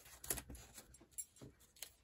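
Faint, scattered small clicks and rustles of paper petals being pressed and rolled with a metal ball stylus on a foam mat.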